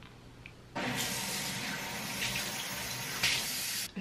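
Bathroom sink faucet running steadily into the basin for about three seconds. It comes on about a second in and is shut off abruptly just before the end.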